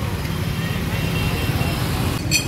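Motorcycles and other road traffic running past on a busy street, a steady low rumble.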